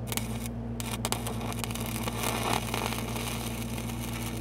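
Shielded metal arc (stick) welding arc crackling steadily from about a second in, as an electrode burns on magnetized steel pipe, over the steady hum of an engine-driven SAE 300 welding machine.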